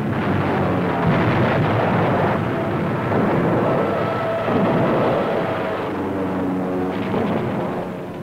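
Naval anti-aircraft gunfire and bursting shells, a dense continuous barrage on an old newsreel soundtrack, easing slightly near the end.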